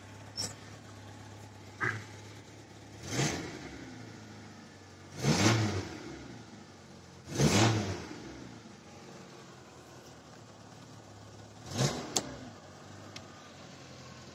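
Zastava Yugo's engine idling on petrol with a steady low hum, revved up briefly four times, each surge lasting about a second before dropping back to idle.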